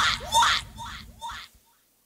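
Pre-recorded lip-sync track: a voice's last word repeats in a fading echo four or five times, then the track cuts off about one and a half seconds in.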